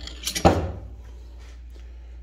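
Metal clicking and a short clatter about half a second in as a steel chisel bit is pulled out of a Snap-on air hammer's quick-change chuck, followed by quieter handling noise.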